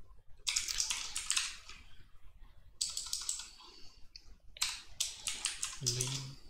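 Computer keyboard being typed on in three short runs of rapid keystrokes, with brief pauses between them.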